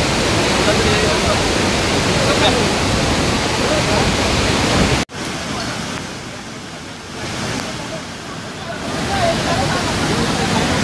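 Loud, steady rush of a waterfall and river in flood, with faint voices over it. About halfway through the sound cuts off abruptly and returns as a quieter rush of the same torrent that grows louder again near the end.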